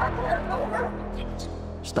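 A monster's throaty growl-like vocal sound effect in the first second, over a low sustained drone from the score.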